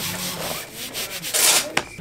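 A hand rubbing and sliding across a sheet of cardboard in several strokes. The loudest stroke comes about one and a half seconds in, and a sharp tap follows just before the end.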